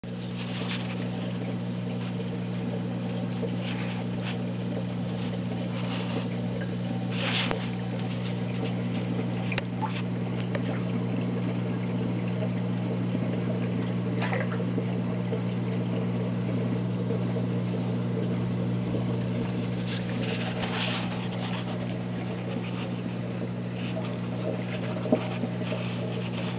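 Steady electric hum of a saltwater aquarium's pump, with a few brief faint trickling water sounds over it.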